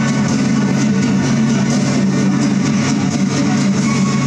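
Electronic music played live: a loud, steady low drone under a dense wash of sound, with quick high ticks running through it.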